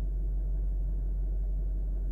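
Steady low rumble inside a car's cabin, even and unchanging, with no other events.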